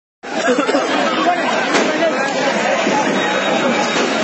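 A crowd of many people talking and calling out at once, with one sharp crack about two seconds in.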